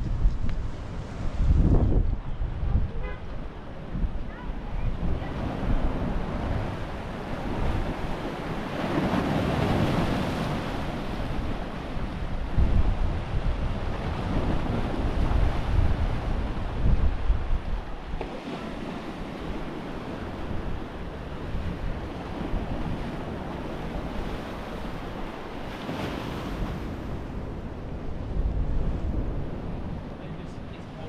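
Sea waves breaking and washing against a rocky shore, rising in surges, with wind gusting on the microphone.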